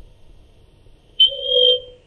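A single electronic beep, one steady high-pitched tone lasting about half a second, starting just past the middle.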